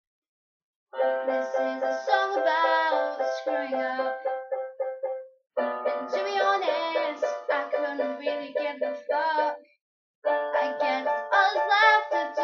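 Electronic keyboard played with a piano sound, an instrumental passage of quickly repeated chords over a moving bass line. It comes in three phrases, each breaking off suddenly into a short silence.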